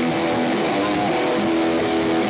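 Live rock band playing loud, with electric guitars holding sustained chords.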